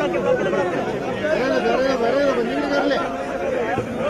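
A crowd of many people talking over one another, with several voices overlapping at once.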